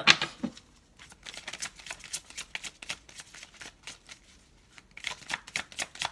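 Deck of tarot cards being shuffled by hand: a quick run of card clicks and flicks that pauses for about a second and then starts again.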